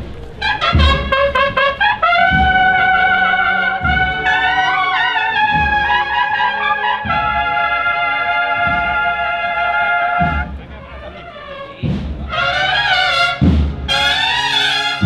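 Cornet-and-drum band playing a Holy Week processional march: cornets holding long, sustained chords over regular bass drum beats. The music drops quieter for about a second and a half near the end, then the cornets come back in.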